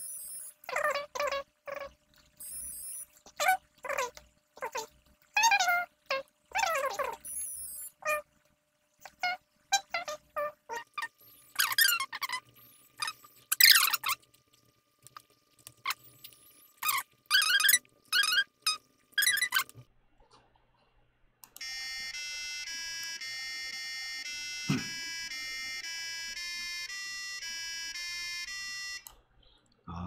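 A man's voice fast-forwarded into high, squeaky chipmunk-like chatter for about twenty seconds. After a short gap comes about seven seconds of a simple electronic tune of stepped beeping notes.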